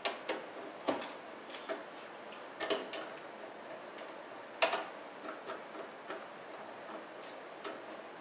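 Irregular small metallic clicks and taps of a Torx screwdriver backing small screws out of a TiVo Series 2's metal case, with one sharper tap about four and a half seconds in.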